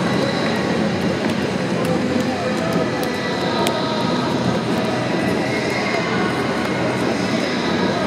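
Steady, echoing roar of a large indoor ballpark with voices mixed in, and a few sharp hand slaps as baseball players high-five one another down a line.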